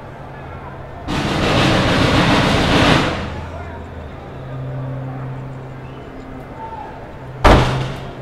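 Busy street sounds: a steady low engine hum, a loud rush of noise that lasts about two seconds starting a second in and then fades, and a single sharp bang near the end.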